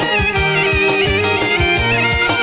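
Albanian folk-pop instrumental break: an ornamented, bending clarinet melody over keyboard and a steady drum beat.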